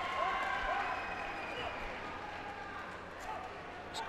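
Crowd murmur and faint, distant voices, slowly dying away.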